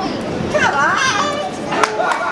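Children's voices from a street-show audience, with one high warbling call about half a second in, over street noise; a short sharp knock near the end.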